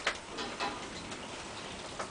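A few faint, light clicks from handling a hot sauce bottle while a dried plug is cleared from its neck, over a low, steady hiss.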